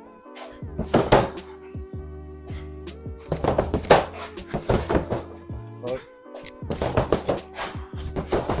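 Gloved punches landing on an Everlast Powercore freestanding heavy bag in irregular clusters, the hardest about a second in and about four seconds in, over steady background music.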